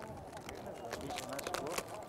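Crisp Tajik flatbread (non chapoti) crackling as it is broken by hand: a run of small sharp crackles, thickest around the middle and latter part, over faint voices.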